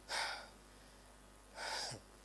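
A man breathing audibly into a handheld microphone: two short breaths, one at the start and one near the end.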